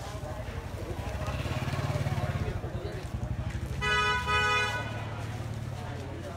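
A vehicle horn honked twice in quick succession, two short toots about four seconds in, over the low rumble of an engine running close by.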